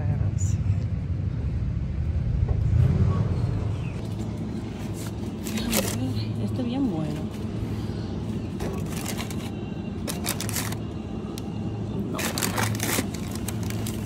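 Steady street hum for the first few seconds, then shop ambience with faint indistinct voices. Several brief scrapes and rustles, a few seconds apart, come from hands handling melons in a produce display.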